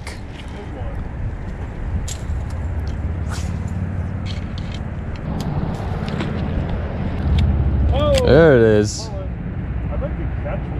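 Steady low outdoor rumble with a few light clicks scattered through it. About eight seconds in comes a short, wavering vocal sound from a person, the loudest moment.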